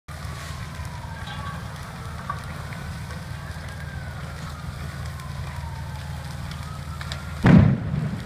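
A large structure fire burning with a steady low roar, faint sirens wailing as they rise and fall, then a single loud sudden bang near the end, taken for a propane tank going off in the burning garage.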